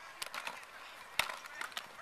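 Youth football players' helmets and shoulder pads clacking and knocking together as the ball is snapped and the linemen collide: a scatter of short sharp clacks, the loudest a sharp crack about a second in.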